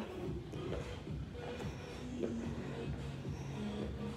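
Faint background music, with soft shuffling of sneakers stepping sideways on a hard floor.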